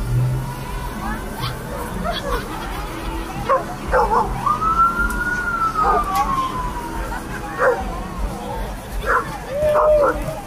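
A dog barking several times. About halfway through, a police siren gives one long wail that falls in pitch.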